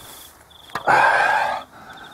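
Insects chirping steadily at one high pitch in grass. About three-quarters of a second in comes a loud, breathy rushing sound lasting close to a second, the loudest thing here.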